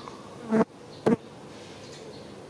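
A flying insect buzzing close past the microphone in two short bursts, the first about half a second in and the second about half a second later.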